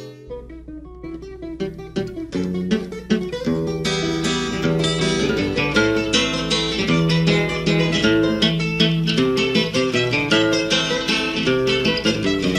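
Instrumental acoustic guitar playing in Peruvian criollo style, with no singing. Single picked notes come in sparsely at first, then fill out into busy picked runs over steady bass notes from about four seconds in.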